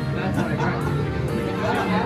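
Several people chattering at once, with music playing underneath.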